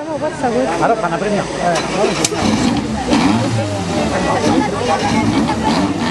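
A Fiat Seicento rally car's small engine running low as the car rolls slowly down the finish ramp, under steady chatter of voices from the crowd.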